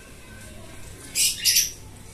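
Pet lovebirds calling: two short, high-pitched chirps in quick succession past the middle.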